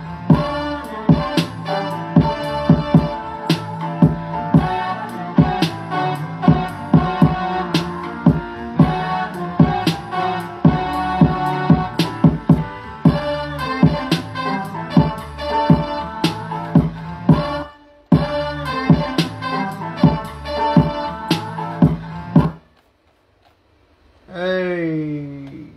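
A hip-hop beat in progress playing back from the computer: steady drum hits over a looped, pitched music sample. It cuts out briefly about 18 seconds in, then stops suddenly a second or so before the end.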